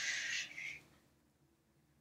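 A child's breathy hiss trailing off under a second in, followed by near silence.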